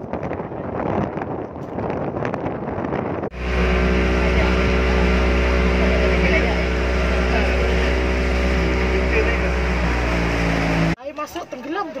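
Motorboat engine running at a steady speed, heard from on board with wind and water noise; it starts abruptly about three seconds in and cuts off suddenly about a second before the end. Before it comes a few seconds of uneven outdoor noise at the jetty.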